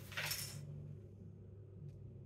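A sheet of paper rustling briefly as it is laid down on a table, then a low steady hum, with one faint click near the end.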